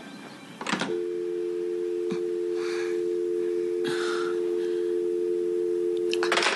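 A click from a desk telephone handset, then a steady two-note dial tone: the caller has hung up and the line is dead.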